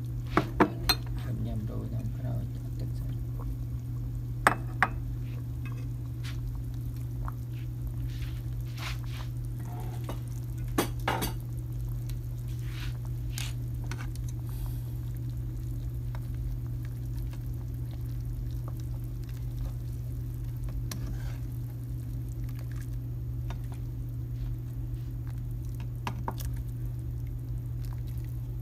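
Ceramic bowls and a ladle knocking and clinking against the counter and a soup pot: a handful of separate sharp knocks, the loudest within the first second and at about four and eleven seconds in. Under them a steady low hum runs throughout.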